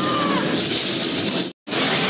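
Glass shattering and debris crashing as a vehicle smashes through, with a dense, loud crash sound effect and a brief high squeal at the very start. The sound drops out for a split second about one and a half seconds in, then the crash continues.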